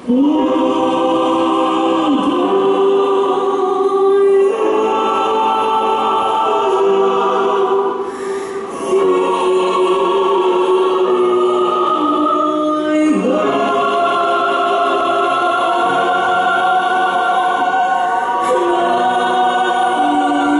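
A choir singing slow, long-held chords, with a female solo voice, entering together at full volume at the start. There is a brief dip about eight seconds in.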